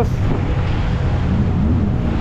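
Jet ski engine running steadily under way, mixed with wind and water noise.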